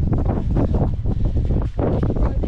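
Wind buffeting the microphone: a loud, irregular, gusting rumble.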